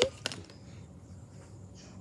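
Trading cards being handled and flicked through by hand: a short card click just after the start, then faint card handling over quiet room tone.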